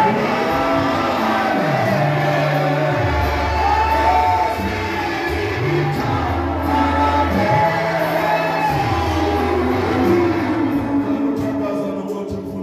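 Gospel song sung by a group of voices over electronic keyboard accompaniment. Its low bass notes are held and change every second or two.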